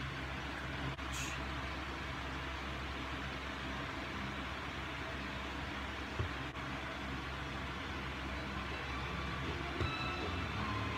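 Steady low hum with a hiss, like a fan or other room machinery, with a couple of faint small clicks.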